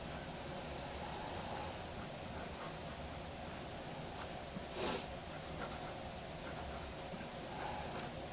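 Mechanical pencil scratching on drawing paper in short sketching strokes, faint, with two sharper strokes about four and five seconds in.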